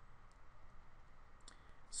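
A few faint clicks and taps from handwriting input on a computer screen, over low room hiss.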